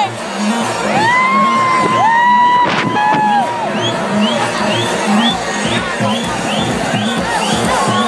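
Electronic dance music from a DJ set played loud over a sound system, with a steady kick-drum beat of about two a second and gliding synth lines. A crowd cheers and whoops over it.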